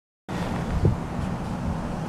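A steady low mechanical hum with wind rumble on the microphone. It starts suddenly about a quarter of a second in, with a single soft knock just under a second in.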